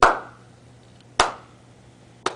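Two sharp hand claps about a second apart, each with a short fading tail.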